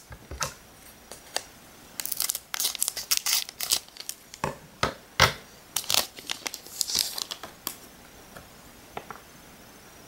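A shiny plastic Pokémon card booster pack wrapper being crinkled and torn open by hand, in a run of crackling rustles and small clicks from about two to eight seconds in.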